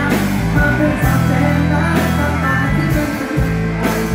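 Live rock band music, with a drum hit about once a second over sustained chords and a heavy bass.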